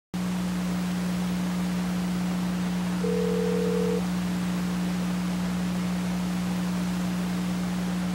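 Steady electrical hum and hiss from an old videotape recording, with a single beep lasting about a second, about three seconds in.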